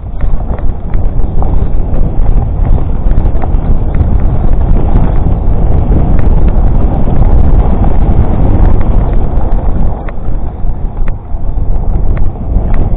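Heavy wind buffeting on an action camera's microphone mixed with tyres rumbling over a dirt trail during a fast mountain-bike descent, with scattered clicks and rattles from the bike. It eases briefly about ten seconds in.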